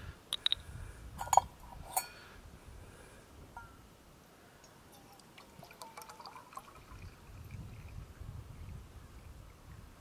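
Water poured from a plastic bottle into a stainless steel cup, faint and low. A few sharp clicks sound in the first two seconds.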